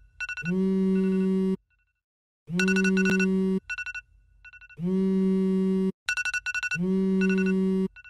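Phone alarm ringing: a low electronic tone with quick high beeps over it, in bursts about a second long, repeated with short gaps.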